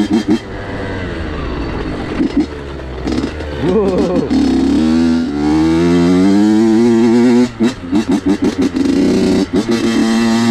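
Honda CR85's 85cc two-stroke single-cylinder engine on a trail ride. It runs lower and rougher at first, then climbs in pitch under throttle twice. Near the end it cuts in and out in quick blips.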